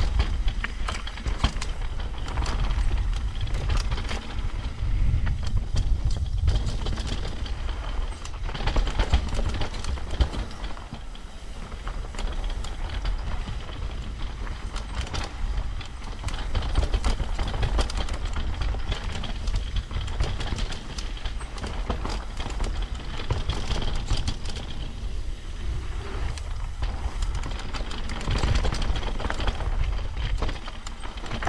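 Downhill mountain bike descending a rough dirt and rock trail: tyres crunching over stones and the bike rattling and clattering over bumps, with a constant low wind rumble on the camera microphone.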